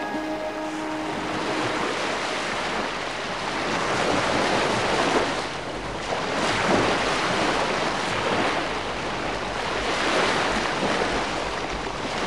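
Wind rushing over the microphone outdoors, a steady noise that swells into gusts every few seconds and eases again.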